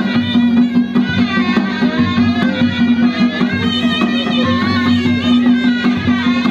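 Ladakhi folk dance music played live: a wavering, ornamented reed-pipe melody over a steady held drone, with a drum beat underneath.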